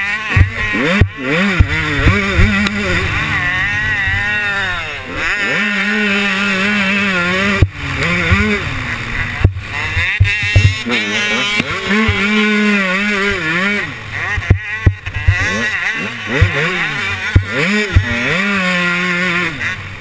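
KTM 125 two-stroke motocross engine revving hard, its pitch climbing and dropping over and over with the throttle and gear changes, with a few brief cuts. Wind rushes over the microphone, and there are sharp knocks from the bike hitting bumps.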